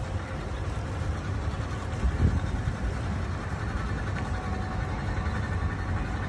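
Small abra boat under way on a canal: a steady low rumble, with a brief thump about two seconds in.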